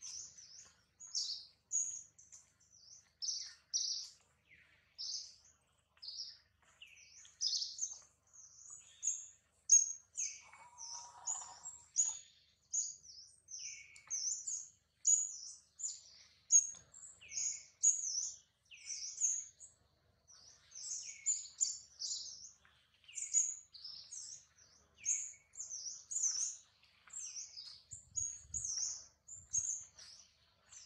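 Small birds chirping in quick succession, short high-pitched calls several times a second throughout, some answered by lower notes.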